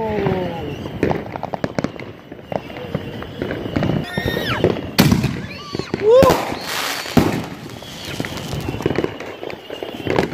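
Consumer fireworks going off close by: a ground fountain crackling and popping, with many small pops throughout and sharper bangs about five and seven seconds in.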